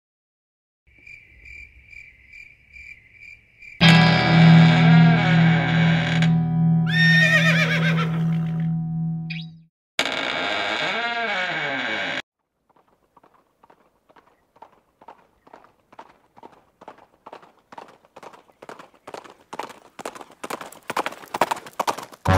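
A faint high chirping, about three times a second, then loud distorted music with a horse whinnying through it, cut off suddenly near ten seconds. A second short burst follows with another whinny, then horse hoofbeats that grow steadily louder and quicker as the horse approaches.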